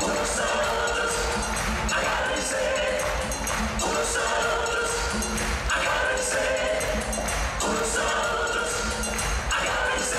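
Live band playing an upbeat Latin pop song, with a horn section, electric guitar and percussion; the chords change about every two seconds.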